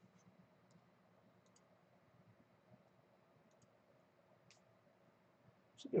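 Faint computer mouse clicks, a handful of short, scattered ticks spread over several seconds, over quiet room tone.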